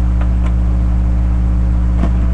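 Loud, steady low electrical hum in a webcam recording, made of several evenly spaced tones. Two faint clicks in the first half second come from hands handling a toy package.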